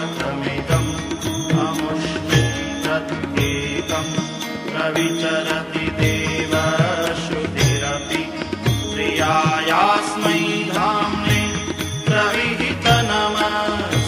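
Indian devotional music: a gliding melody over a steady drum beat of about two strokes a second.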